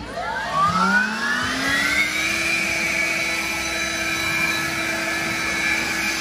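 Snapper cordless battery leaf blower spinning up with a rising whine over about two seconds, then running steady at full speed with a rush of air.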